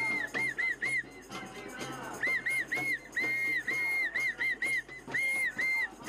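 A whistle blown in runs of quick, short blasts, about four a second, in groups of three to five with brief gaps between, over clattering crowd noise.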